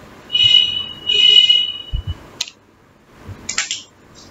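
Two high-pitched buzzer-like tones, a short one and then a longer one, followed by a sharp click and a brief burst of hiss near the end.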